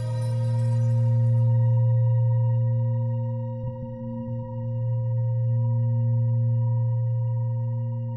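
Ambient meditation music: a sustained low drone tone with a few faint higher overtones that swells slowly in loudness and dips briefly about halfway through. A high shimmering layer fades out in the first couple of seconds.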